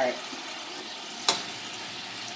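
Sliced hot dogs frying in melted butter in a stainless steel pot, a steady sizzle, with one sharp metal clink of a spoon against the pot a little past halfway.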